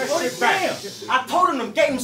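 A man's voice rapping into a microphone, with several sharp hissing s-sounds in the second half.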